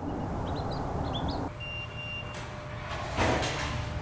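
Outdoor traffic ambience: a steady rush of vehicle noise with a few short bird chirps over it. The sound changes about a second and a half in, and a brief whoosh comes near the end.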